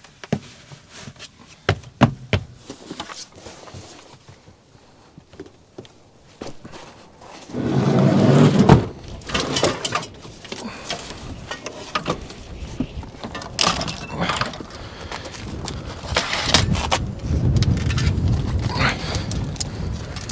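Scattered clicks, clunks and rattles of a folding e-bike and gear being handled and taken out of a camper van, with a louder rushing noise about eight seconds in.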